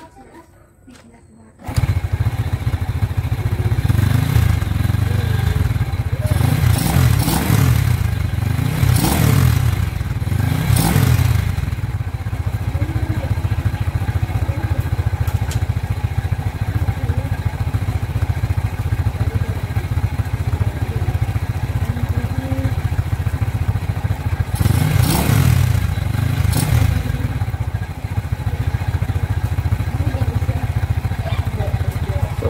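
Bored-up Honda XRM 110 single-cylinder four-stroke motorcycle engine starting about two seconds in, then idling with a series of throttle blips near the start and again near the end. Its exhaust note is louder, which the owner puts down to the bore-up.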